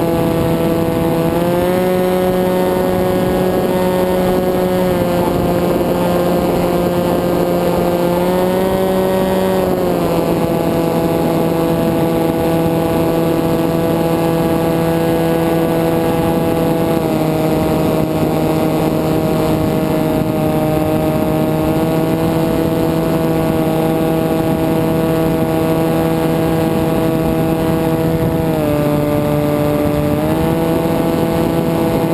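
FPV flying wing's motor and propeller running steadily in flight, heard from a camera on the airframe over a haze of wind noise. The drone steps up and down in pitch several times as the throttle changes, dropping a little about ten seconds in and again near the end before rising.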